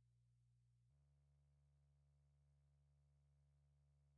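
Near silence, with only a very faint steady low hum that shifts in pitch about a second in.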